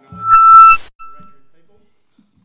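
Loud, high-pitched squeal of PA microphone feedback from the lectern microphone, setting in as a word is spoken and cutting off after about half a second. It returns briefly as a fainter tone that fades out.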